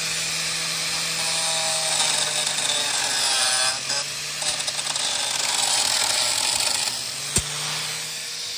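Angle grinder with a cut-off disc running and cutting metal: a steady motor hum under a continuous hissing grind. A single sharp click comes near the end.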